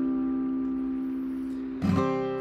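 Strummed acoustic guitar chord left ringing and slowly fading as a song ends, then strummed once more near the end.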